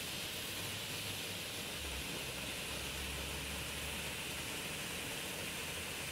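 A steady, even hiss with a faint low hum underneath.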